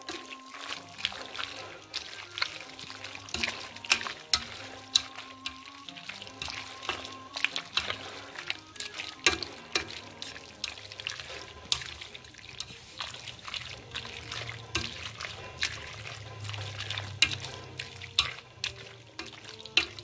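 Creamy pasta being stirred in a stainless steel AMC pot: irregular wet squelches and clicks of the utensil through the sauce and against the pot, with faint soft music underneath.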